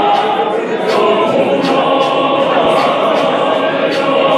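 Zionist church choir singing together in full voice, held notes blending in harmony, with a sharp steady beat about twice a second.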